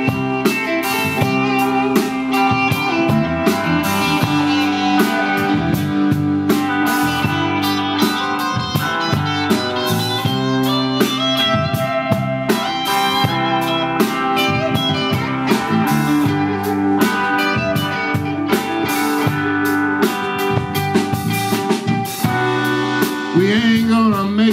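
Live blues band playing an instrumental passage between verses: electric guitars over bass guitar and a drum kit keeping a steady beat.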